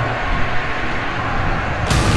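Film trailer sound design: a steady rushing, rumbling noise with no clear tones, changing abruptly just before the end.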